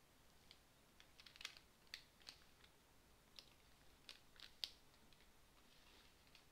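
Near silence with about eight faint, sharp clicks scattered through the middle.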